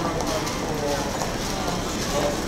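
Indistinct voices of several people talking over a busy street's background noise.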